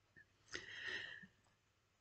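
Near silence with one faint, short intake of breath by a woman about half a second in, before she speaks again.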